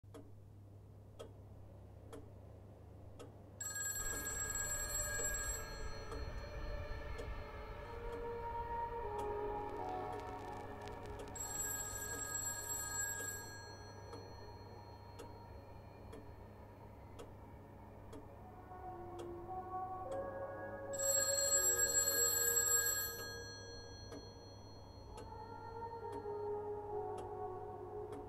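A clock ticking about once a second, with a bell ringing in three bursts of about two seconds each, over soft, slow music notes.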